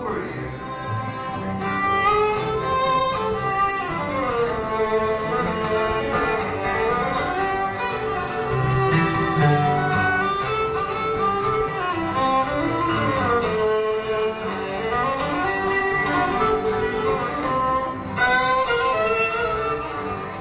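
Bluegrass band's instrumental break: a fiddle carries the melody, with sliding notes, over plucked guitar accompaniment.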